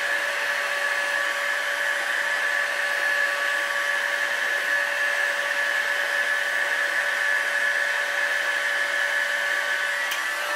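Electric heat gun running steadily: an even rush of blown air with a steady whine. It is heating an aluminium engine crankcase so the metal expands for pressing in a bearing.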